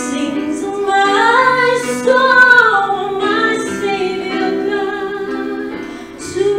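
Music: a woman singing a slow worship song over sustained instrumental accompaniment.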